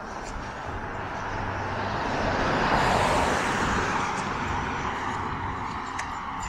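A car driving past on the street beside the sidewalk, its tyre and engine noise swelling to a peak about three seconds in and then fading away.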